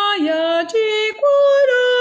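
A woman singing solo, a melodic phrase of held notes that step up and down in pitch with clean jumps between them.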